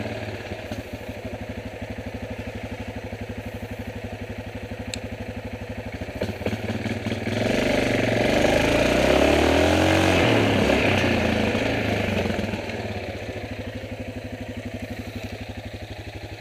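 Yamaha Grizzly 450 ATV's single-cylinder engine running at low speed, then revving up for a few seconds about halfway through, its pitch rising and falling, before settling back to a steady idle.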